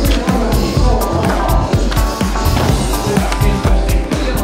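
Music with a steady drum beat, with a skateboard's wheels rolling and its deck clacking on wooden ramps underneath.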